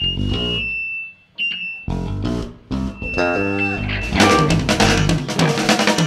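Live band playing on electric guitars, bass guitar and drum kit. The music comes in short stop-start hits with two brief pauses, then the full band comes in densely about four seconds in.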